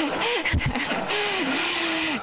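Indistinct voices picked up by the meeting-room microphones, with a low thump about half a second in.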